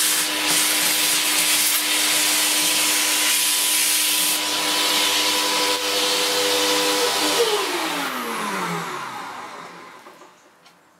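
Vacuum cleaner with a narrow crevice nozzle running steadily, sucking debris off model railway track. About seven seconds in it is switched off, and its motor winds down with a falling whine that fades away.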